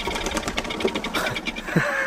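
A large bird's wings flapping rapidly as it takes off from its nest, a fast run of beats. A man starts to laugh near the end.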